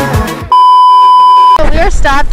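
Music ends about half a second in, then an edited-in electronic bleep, a loud steady tone at a single pitch of the kind used as a censor bleep, holds for about a second and cuts off abruptly as a woman starts speaking.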